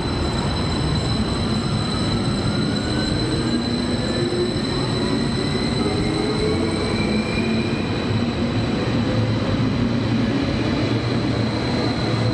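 A Stadler KISS double-deck electric multiple unit passes close by along the platform of an underground station, with a steady low rumble of wheels and running gear. Its electric traction drive gives a faint whine that rises in pitch over the first several seconds as the train gathers speed.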